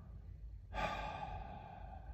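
A man's long, audible exhale, starting about two-thirds of a second in and trailing off over about a second.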